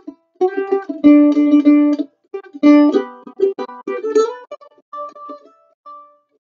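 Kentucky KM-950 mandolin played solo, picking an old-time melody in G at a slow pace, in separate plucked notes and short phrases. The loudest notes and chords come about a second in and again near the middle, with brief gaps between phrases.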